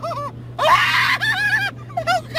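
A woman screaming in a high, wavering voice for about a second, starting about half a second in, after a short laugh at the start.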